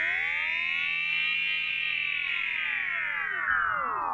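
Electronic tone with many overtones, gliding slowly up to its highest pitch about a second and a half in and then sliding back down, in a long arching pitch sweep within an instrumental music passage.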